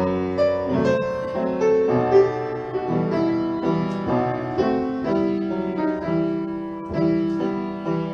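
Solo piano playing a passage of chords and melody notes, the notes and chords changing about every half second to a second.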